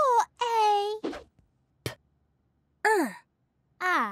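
A cartoon character's voice making short wordless sounds: a rising call and a held "ooh" in the first second, then two short calls that fall in pitch, about three and four seconds in. There is a brief click just before the second of these.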